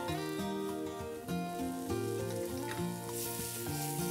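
Mushrooms and garlic frying in butter in a hot pan, a steady sizzle that grows louder about three seconds in. Background music of sustained, stepping notes plays over it.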